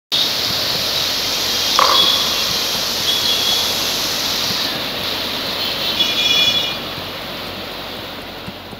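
Rushing, turbulent water of a river in spate, churning in rapids over a stony bed.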